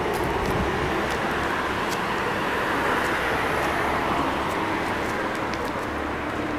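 Street traffic noise: a steady hiss of passing cars, swelling a little and then easing.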